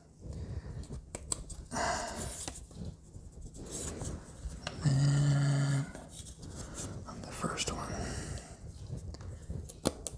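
Thin laser-cut plywood clock parts being handled and pressed together, making scattered light clicks and taps, with soft whispered muttering. About halfway through there is a short steady hum lasting about a second, the loudest sound here.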